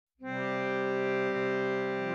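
Music: a held, steady drone chord on a keyboard-like instrument starts about a quarter second in and sustains without a break.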